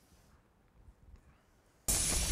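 Faint room noise, then near the end a sudden loud swoosh sound effect for the animated logo.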